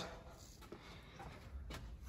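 Quiet room tone with no distinct event, and a faint low rumble that comes in near the end.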